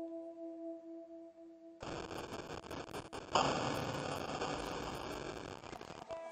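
Electric guitar played through effects: a sustained drone of two held notes, then about two seconds in a dense, noisy wall of guitar sound cuts in abruptly, growing louder about a second later.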